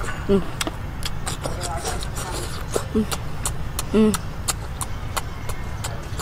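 A boy chewing bamboo shoot in close-up: a run of wet clicking and lip-smacking sounds, broken three times by a short hummed "mm", over a steady low rumble in the background.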